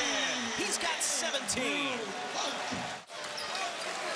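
Basketball game sound from the court: sneakers squeaking on the hardwood and the ball bouncing over arena crowd noise. The sound cuts out abruptly about three seconds in, then resumes.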